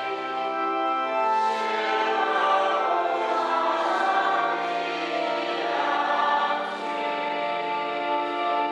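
A choir singing the responsorial psalm, a slow hymn of long held chords that change every second or two.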